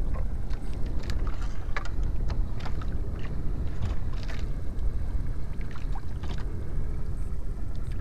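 Steady low rumble of wind and sea around a small open fishing boat at sea, with scattered light knocks and taps from the boat.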